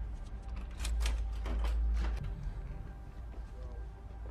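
Tense film score with a deep low drone, under a quick run of sharp clicks and knocks in the first half.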